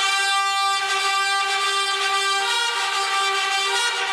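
Brass band playing long held chords, the notes changing every second or so.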